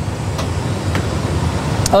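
Steady, even rumble of cockpit noise in an Airbus A320 flight simulator: simulated engine and airflow sound.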